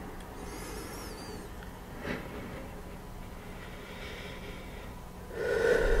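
A person breathing hard while resting after exertion, over a low steady background, with one louder breath near the end.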